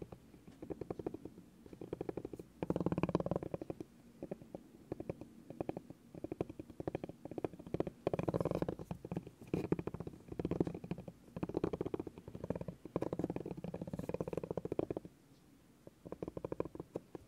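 Spiky massage ball rolled by hand across a bamboo board, its nubs making rapid dense tapping clatter in surges that grow and fade every second or two. It stops shortly before the end.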